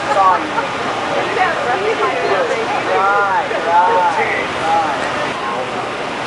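Indistinct talking from several people, too unclear for words, over a steady rushing noise.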